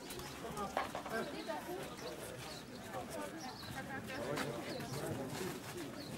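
Indistinct chatter of a group of people talking at once, with a few sharp clicks.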